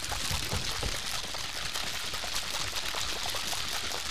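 Several sealed cups of boba milk tea being shaken hard at once, the drink and tapioca pearls sloshing inside in a steady, continuous rustle.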